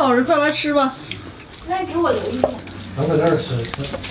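Voices talking in a small room, with a few light clicks.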